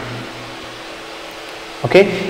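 Steady low room hum, like a fan, heard in a pause in a man's speech; his voice trails off at the start and comes back near the end.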